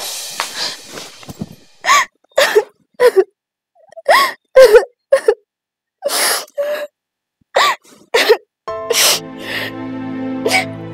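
A woman sobbing in short, broken cries, each bending up and down in pitch, with silent gaps between them. Background music with sustained tones comes in near the end.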